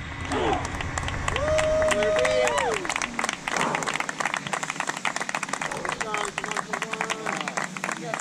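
Small group clapping, with a few voices shouting and cheering over it; one long held shout a second and a half in.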